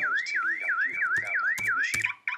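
iAlertU security alarm playing through a MacBook Pro's speakers: a car-alarm-style siren sweeping up and down in pitch about four times a second, set off by unplugging the iPhone's cable from the laptop. It cuts off at the end as the alarm is disarmed.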